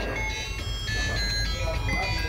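A tinkling, high-pitched electronic jingle melody of short stepping notes, like an ice-cream-van or music-box tune, over a steady low rumble.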